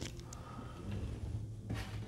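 Quiet room tone with a low steady hum, and a few faint clicks of plastic action figures being handled near the start and near the end.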